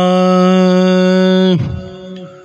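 A man's voice holding one long, steady sung note in a Sufi kalam recitation. The note ends about a second and a half in with a drop in pitch, and a faint steady drone at the same pitch remains after it.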